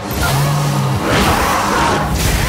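Horror-trailer sound design under glitching VHS title cards: a low droning hum, then a swelling rush of static-like noise through the second second.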